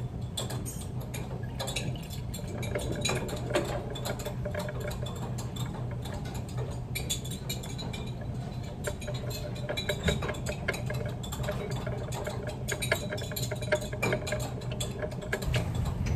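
Glassware being handled during a titration: small irregular clicks, taps and scrapes of a glass flask on the ring-stand base and the burette stopcock, over a steady low hum.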